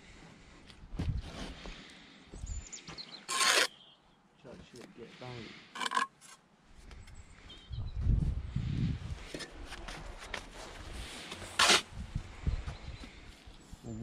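Steel brick trowel scraping mortar against brick and the mortar board, in three short, sharp scrapes, the loudest near the end, with quieter handling noise between.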